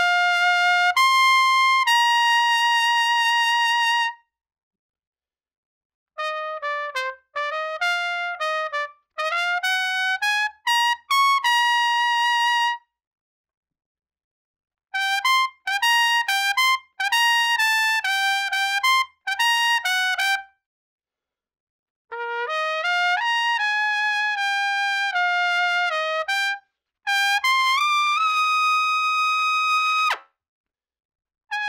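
Unaccompanied trumpet playing short, lyrical lead-trumpet phrases for developing finesse. There are about five phrases with silent pauses between them, and most end on a held note.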